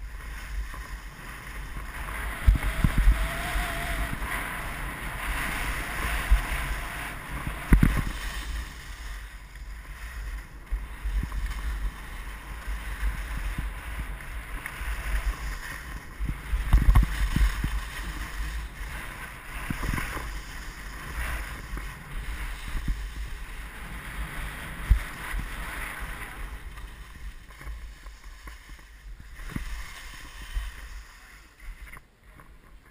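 Skis scraping and hissing over packed snow during a fast downhill run, with wind rushing over the camera's microphone. A few low thumps stand out, the loudest about 8 and 17 seconds in.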